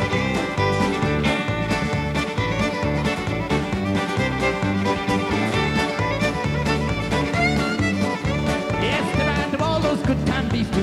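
Live country band playing an instrumental break led by a fiddle, over guitars, bass and drums keeping a steady dance beat.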